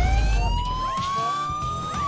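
The show's laughter alarm, an electronic siren, sounding one slow rising wail that turns to fall right at the end: the signal that a contestant has laughed and will be given a warning.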